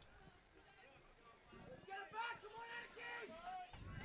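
Faint distant voices calling out for about two seconds from partway in, as raised shouts carrying across an open football ground.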